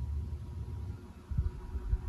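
Electric table fan running with a steady low motor hum; a little over a second in, its airflow starts buffeting the microphone in irregular low gusts.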